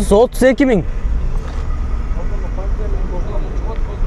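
Honda Saber's V6 engine idling, a steady low rumble heard inside the car's cabin, after a man's few words.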